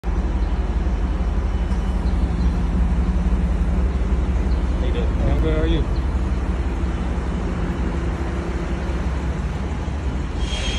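Steady low rumble of vehicle and traffic noise, with a short voice-like sound about halfway through.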